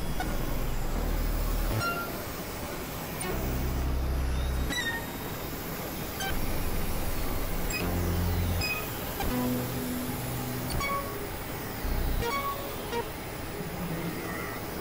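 Layered experimental electronic music: a noisy wash with short low synth notes that start and stop every second or so, and scattered brief high beeps.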